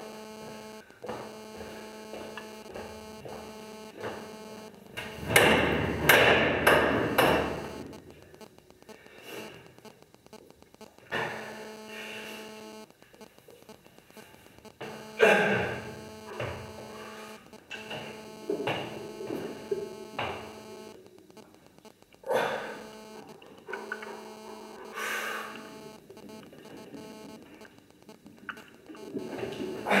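Steady electrical hum under a run of loud, irregular sounds from a lifter setting up and squatting a heavy barbell in a rack: hard breaths and effort noises, ending in a grunt and a sigh.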